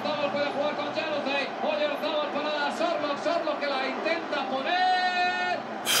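Quiet speech runs throughout, quieter than the loud talk just before and after. About five seconds in there is one steady pitched note lasting about a second.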